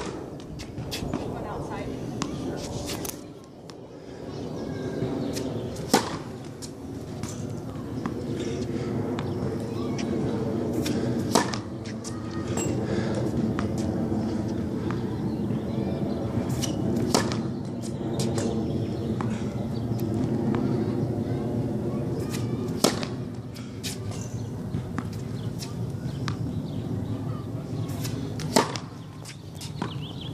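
Tennis serves: a racket strings striking the ball with a sharp pop, six times, about every six seconds, over a steady background hum.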